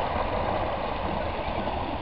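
Steady rush of water running through a mini-golf course's artificial rock stream.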